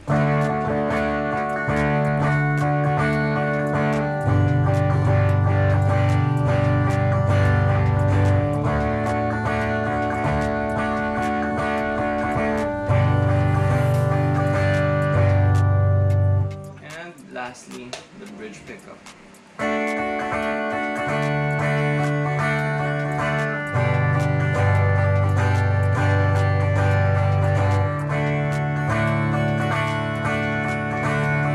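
Tagima TG-530 Stratocaster-style electric guitar, amplified, on its middle-and-bridge pickup setting, playing sustained chords that change every couple of seconds. About sixteen seconds in, the playing drops away for about three seconds, then the chords start again.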